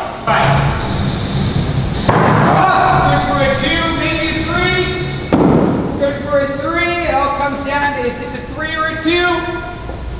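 Thrown hatchets striking wooden targets: two sharp thuds, about two and five seconds in. Background music with a singing voice runs throughout.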